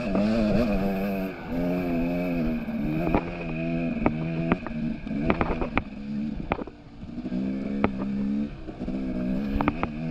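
Dirt bike engine being ridden over rough rocky trail, the throttle opening and closing so the pitch rises and falls, easing off briefly about two-thirds of the way in. Sharp clicks and knocks from the bike over the rocks come through repeatedly.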